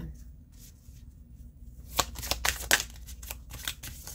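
A tarot deck being shuffled by hand: quiet at first, then from about two seconds in a rapid, irregular run of sharp card snaps and flicks.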